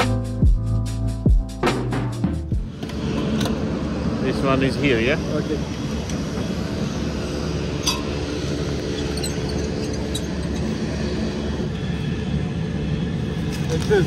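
Background music with a drum beat for the first two to three seconds. It gives way to a steady low vehicle engine hum, with faint voices and a single clink about eight seconds in.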